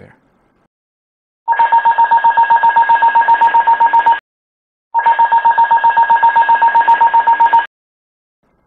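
ATR stall warning 'cricket' aural: a rapid, evenly pulsing electronic trill, sounded in two bursts of nearly three seconds each with a short gap between. It signals that the angle of attack has reached the stall-warning threshold, too close to a stall.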